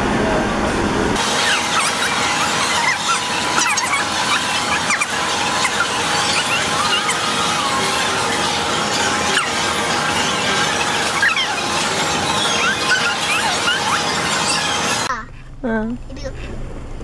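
Busy food-court din: a crowd of voices and clatter, with many short high-pitched squeals scattered throughout. Near the end it cuts off suddenly to a quieter car-cabin hum.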